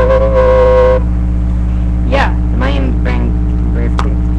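A boy's wordless vocalising: a held hummed note for about the first second, then short sliding voice sounds about two to three seconds in. A steady low electrical hum from the microphone runs underneath.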